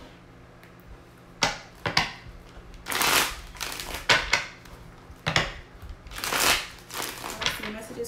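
A deck of tarot cards being shuffled by hand: a series of brief rustling riffles and snaps of the cards, with longer, louder riffles about three seconds in and again about six and a half seconds in.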